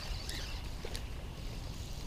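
Quiet outdoor background: a low steady rumble with a faint haze and a few faint clicks.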